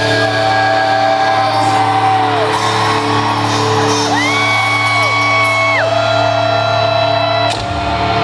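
Rock band playing live in a large hall, recorded on a phone from the crowd: a steady bass under long held sung notes that slide into and out of pitch, with crowd whoops and yells over it. There is a short drop about seven and a half seconds in.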